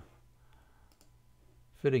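A single faint click of a computer mouse about a second in, over a low steady hum, between a man's spoken words; a man's voice starts again near the end.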